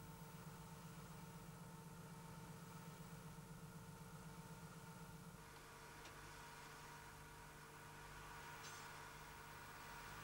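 Near silence: a faint steady low hum that steps down slightly in pitch about halfway through.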